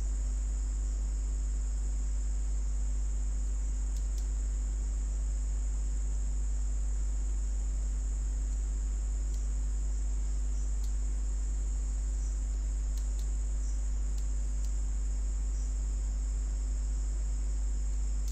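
Steady electrical hum with a constant high-pitched whine, the recording's background noise, with a few faint clicks.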